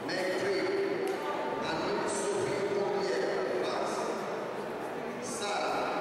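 Voices shouting and calling out across a sports hall, drawn out in long calls rather than conversational speech.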